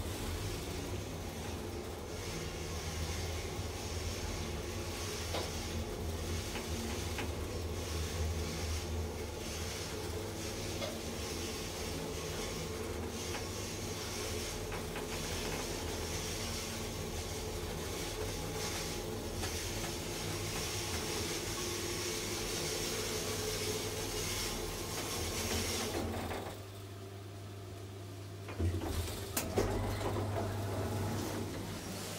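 1987 Valmet-OTIS hydraulic elevator in motion: a steady low hum from the hydraulic drive with a hiss of flowing oil, which drops away about 26 seconds in as the car stops. A clunk follows near the end.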